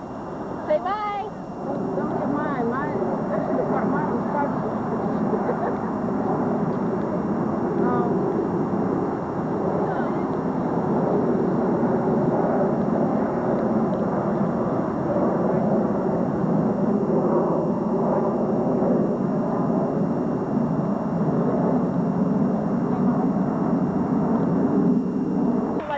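Indistinct overlapping chatter of several people talking at once, steady throughout, with one short call about a second in.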